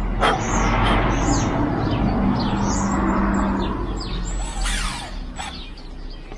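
Small birds chirping repeatedly over a loud, even rushing noise that holds for about four seconds and then fades, with a steady low hum in the middle of it.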